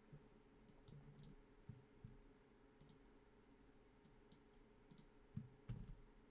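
Faint, scattered clicks of a computer mouse over a low steady room hum, with a couple of soft low thumps near the end.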